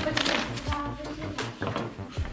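Quiet, indistinct voices in the room, with a few light knocks and rubbing from hands kneading salt dough in a ceramic bowl and on a table.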